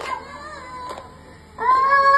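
A toddler's high voice singing into a microphone: a faint held note, a brief lull, then a loud, long held note starting about one and a half seconds in, with a wailing, meow-like quality.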